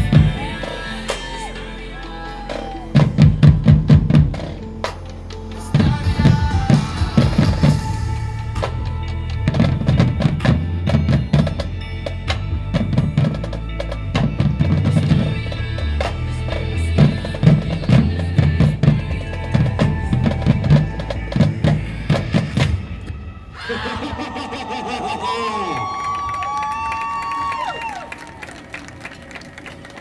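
High school marching band playing its field show: a loud passage driven by snare and bass drums in a steady beat. It cuts off suddenly about two-thirds of the way through, giving way to softer held tones that bend in pitch.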